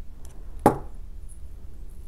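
A single sharp metallic tap about two-thirds of a second in, from jewelry pliers closing on a small chain link.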